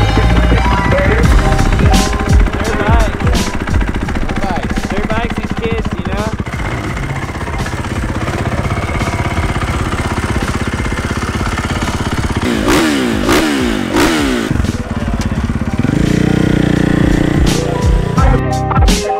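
Motocross dirt bike engine running, with the throttle blipped several times so the revs rise and fall, including a quick run of about four blips near the end.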